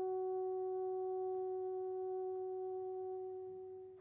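A bassoon holding one long high note alone at a steady pitch, tapering off and stopping near the end.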